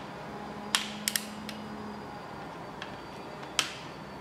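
Click-type ratcheting torque wrench, set to 20 ft-lb, tightening the cam gear bolts of a timing set. A few sharp metallic clicks: one about three-quarters of a second in, a quick pair just after a second, and another near the end.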